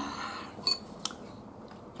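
Tableware clinking: two light, sharp clicks of a utensil against a dish, about two-thirds of a second and one second in.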